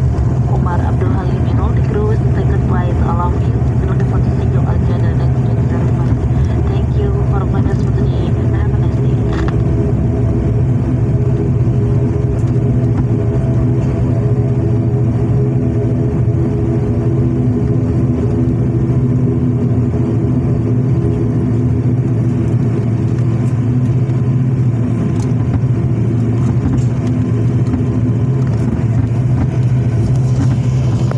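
Cabin sound of an ATR 72 turboprop taxiing on the runway after landing: a steady low drone of the engines and propellers at low power, with a constant hum and steady higher tones that neither rise nor fall.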